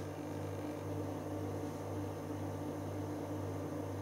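Steady low electrical hum with a faint even hiss underneath, unchanging throughout, with no distinct sounds on top.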